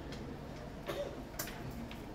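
A few scattered sharp clicks over quiet room tone, the loudest about one and a half seconds in.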